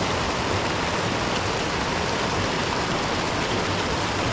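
Steady rushing of white water from a small cascade pouring into a rocky plunge pool, an even hiss-and-roar with no breaks.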